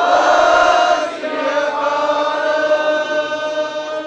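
Sikh kirtan voices chanting together on one long held note, loudest in the first second.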